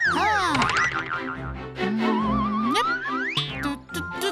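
Cartoon sound effects over children's background music: falling whistles at the start, a wobbling tone that climbs in pitch about two seconds in, and a quick upward swoop near the end.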